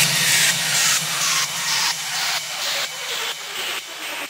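Closing bars of a hard trance track: a pulsing white-noise sweep whose filter falls steadily in pitch, with no kick drum or bass under it, gradually fading out.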